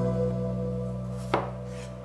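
A kitchen knife cuts down through a strawberry and knocks once on a bamboo cutting board, just past the middle, over background music that holds a chord and fades.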